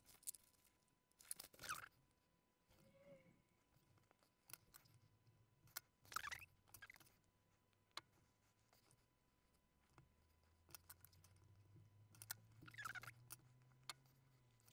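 Near silence broken by a few faint clicks and taps as a small circuit board and hand tools are handled on a wooden desk.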